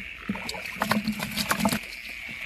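Short splashes and clicks in shallow paddy water as eel tongs grab a rice-field eel. A steady high chirring of night insects runs underneath.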